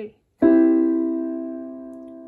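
A C major chord played once on a piano about half a second in, then held so it slowly dies away.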